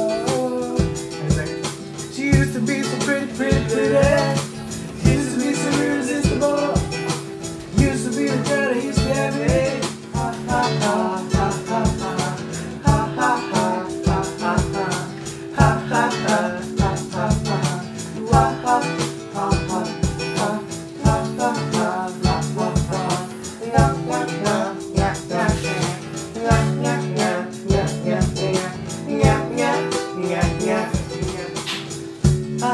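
Guitar strummed in a steady, choppy reggae rhythm over held chords, with a voice singing along as a new song is tried out.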